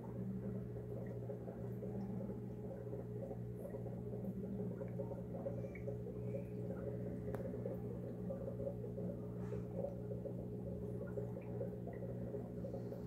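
A steady low electrical hum, as from a small motor or pump running, with a few faint soft clicks.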